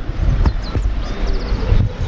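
Wind buffeting the microphone with a heavy low rumble, over footsteps on a dirt trail.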